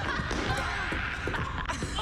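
A few scattered thuds with faint voices behind them, from the TV show's soundtrack as characters play a game in a hall.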